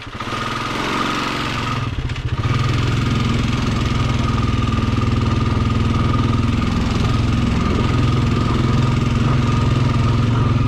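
Honda ATV's single-cylinder engine running as it rides along a dirt trail, with a thin steady whine over it. The engine gets louder over the first second, dips briefly about two seconds in, then runs steadily and louder for the rest.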